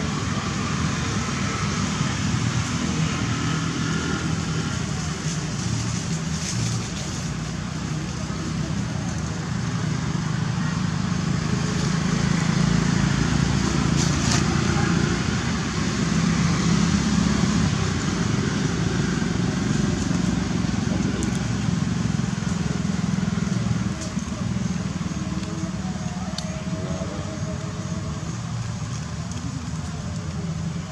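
Steady outdoor background din: a low hum with indistinct voices, without any clear single event standing out.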